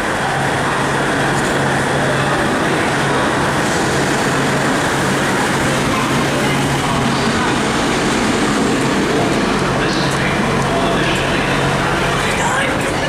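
Class 150 Sprinter diesel multiple unit pulling into the platform, its underfloor diesel engines running with a steady low hum under a broad rumble.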